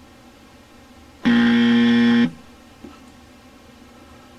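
A buzzer sound effect: one loud, steady, harsh buzz lasting about a second, starting just over a second in, used as a game-show style rejection buzzer.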